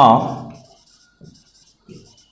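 Marker pen writing on a whiteboard: faint, short scratchy strokes as a word is written. A man's voice trails off in the first half second.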